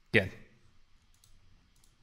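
A few faint, sharp clicks from a computer mouse, most of them near the end, after a single spoken word.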